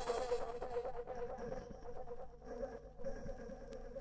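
Sparse breakdown in a tech house track: with no drums, a low sustained synth tone fades slowly, and a faint high tone comes and goes.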